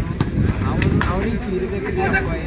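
A volleyball being struck during a rally: about three sharp slaps of hands on the ball, over voices from the crowd and commentators.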